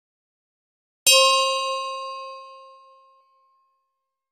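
A single bell chime struck once about a second in, ringing and fading out over about two seconds.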